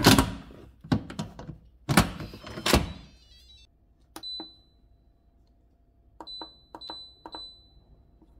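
Four loud thunks of things being set down or handled in the first three seconds, then four short high electronic beeps with clicks, like the buttons on a kitchen appliance's keypad being pressed.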